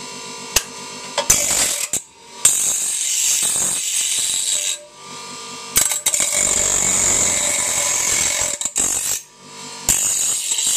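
Bench grinder grinding a small steel square held in locking pliers against the wheel, in three loud passes, the last about three seconds long, with the grinder's motor running steadily between them. The chrome plating is being ground off the steel to prepare it for welding.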